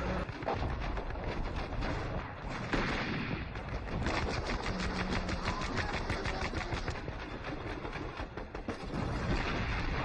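Battle gunfire: rapid bursts of machine-gun fire mixed with rifle shots, with a louder blast about three seconds in.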